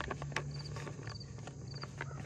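Mouth clicks and smacks of a man working a fresh chew of loose-leaf chewing tobacco, over insects chirping in short triple pulses about every half second and a low steady hum.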